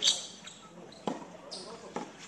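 Tennis ball being hit with rackets and bouncing on a hard court during a doubles rally. A loud, sharp racket hit comes at the start, followed by smaller knocks about a second in and again near the end.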